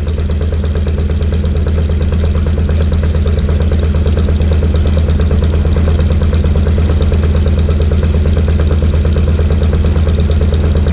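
Noorduyn Norseman's radial piston engine idling steadily, with a rapid even pulse that grows slightly louder in the first few seconds.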